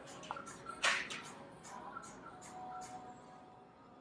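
Quiet room tone with faint background music, and a brief rustle about a second in.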